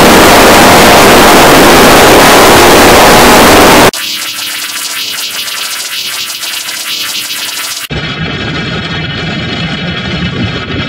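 Harshly distorted, digitally effected music. About four seconds of extremely loud, clipped noise-like blast cut off abruptly. It gives way to a quieter, thin, filtered wash, which changes again abruptly about eight seconds in.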